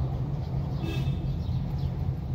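Steady low rumble of a car's engine and tyres heard from inside the cabin while driving slowly in city traffic, with a brief high chirp about a second in.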